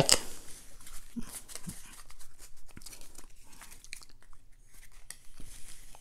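Bicycle playing cards being gathered off a table and squared into a deck by hand: irregular soft rustles and small clicks of card against card, with a quieter pause a little past the middle.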